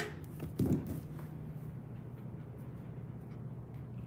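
Dog toys being rummaged in a metal bin, with a few knocks and rattles in the first second, then a steady low hum and faint scattered ticks.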